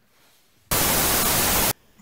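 A loud burst of static hiss, about a second long, that starts and stops abruptly: a TV-static transition effect between two clips.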